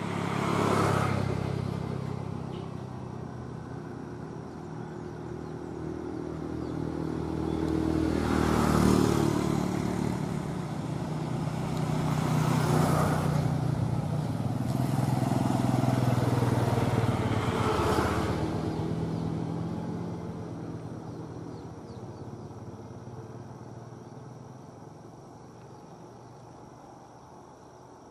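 Motorcycles passing by one after another, each engine growing louder and fading as it goes past, about four or five times.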